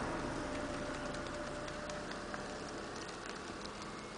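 Faint outdoor background noise slowly dying away, with scattered light ticks and a faint steady hum that fades out about halfway through.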